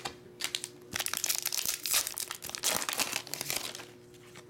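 Hockey trading cards being handled and fanned through in the hand, a quick run of rustles, crinkles and clicks that starts about a second in and lasts about three seconds.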